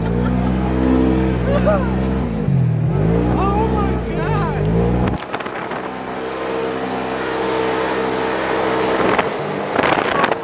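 Off-road side-by-side's engine running and revving over sand, dipping and rising in pitch twice, with people's voices and laughter over it in the first half. After about five seconds the sound changes to a steadier engine drone, and a sharp knock comes near the end.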